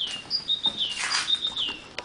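A small bird chirping: about four short whistled notes, each held briefly and then falling in pitch, with a brief rustling noise about a second in.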